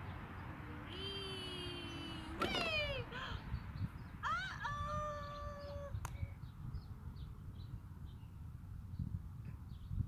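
A young child's voice making two drawn-out, wordless calls: the first held on one pitch, then breaking into a loud falling squeal; the second rising and then held on a higher note.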